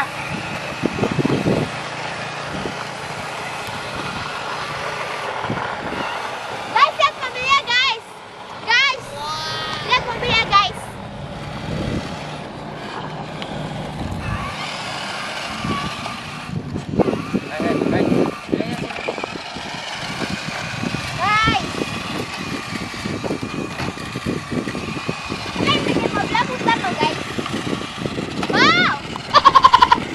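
Remote-control toy construction vehicles, a tracked excavator and a dump truck, running on a concrete path with a steady small-motor whir. High children's voices call out now and then over it.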